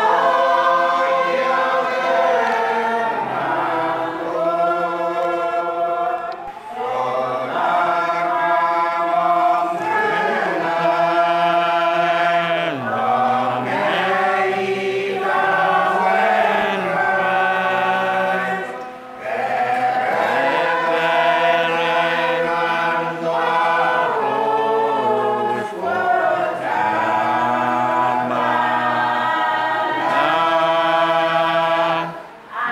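A church congregation singing a hymn together, a group of voices holding long notes, with short breaks between lines about six and nineteen seconds in.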